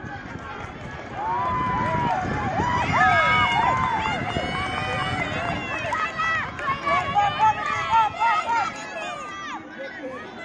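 Spectators shouting and cheering on relay runners, many voices overlapping. It swells about a second in and stays loud, with high shouts throughout.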